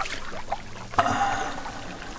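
Bathwater sloshing in a bubble bath, with a sudden louder splash about a second in.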